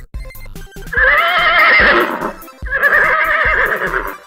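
A horse whinnying twice, each call a second or more long with a quavering pitch, over fast, bouncy polka music.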